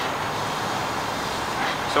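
Handheld propane torch burning with a steady hiss as its flame heats the go-kart axle.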